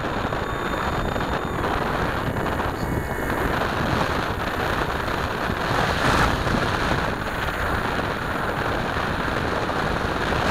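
Steady wind rush and buffeting on the microphone of a wing-mounted onboard camera on an electric RC model warplane in flight, with its motor and propeller under the wind noise. It gets louder briefly about six seconds in, as the plane banks into a dive.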